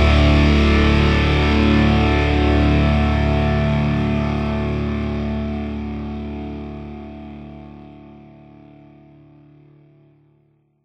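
The end of a rock song: a held distorted electric-guitar chord rings out and fades steadily away over several seconds.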